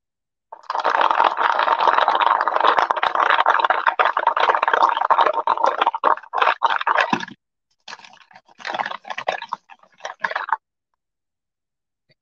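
Wooden beads rolling and rattling around a paper bowl as it is swirled to coat them in wet paint: a steady rolling noise for about seven seconds, then a few shorter swirls that stop a little before the end.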